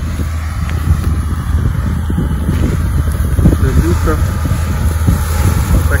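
Large Fendt tractor's diesel engine running steadily under load as it pulls a disc harrow across stubble, a continuous low drone.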